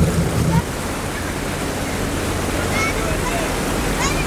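Steady rush of wind and churning wake water behind a moving boat, with a low rumble that drops in level about half a second in.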